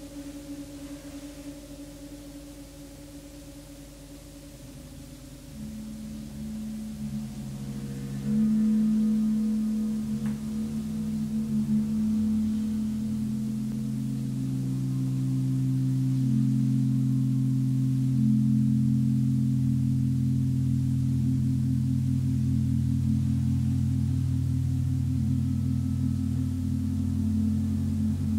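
Large Jupiter planet gong played with a small ball-headed mallet. Its sustained low tones build from soft to full about eight seconds in, then ring on steadily while the overtones shift.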